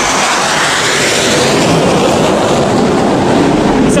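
F/A-18 fighter jet flying low overhead, its jet engines loud and steady.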